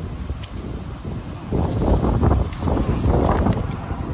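Wind buffeting the microphone: a low, rumbling rush that gusts louder from about a second and a half in.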